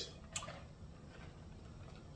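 A single short click about a third of a second in, then faint drinking from a large plastic jug, barely above room tone.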